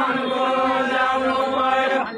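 Men singing a deuda folk song without instruments, holding one long, steady note.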